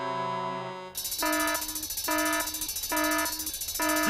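A held cartoon music chord ends about a second in. Then a cartoon alert signal starts: one pitched electronic beep repeating about twice a second over a steady hiss. It is the emergency alarm calling the team to a breakdown.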